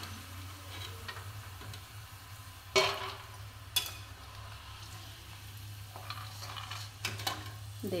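Peanuts sizzling as they finish frying in hot oil in an iron kadai, with a steel slotted skimmer scraping and knocking against the pan as they are scooped out. A sharp metal clank about three seconds in is the loudest sound, another follows a second later, and a few lighter clinks come near the end.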